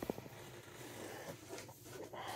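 Faint handling noise: a soft knock at the very start, then light rustling as things are moved about by hand.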